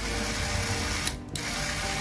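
Small DC motor spinning a paper disc, running with a steady whirring rattle. It cuts out for a moment about a second in and starts again as the micro switch is worked.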